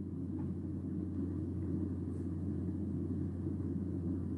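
A steady low hum with a faint rumble of background room noise under it, unchanging throughout.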